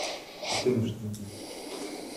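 Quiet audible breaths, with a short faint voiced murmur about half a second in.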